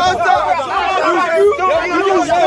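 Several voices talking and shouting over one another at once, a loud jumble of chatter with no single clear speaker.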